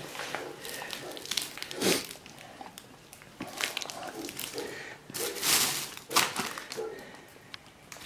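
Plastic bags and paper from an opened parcel rustling and crinkling in irregular short bursts.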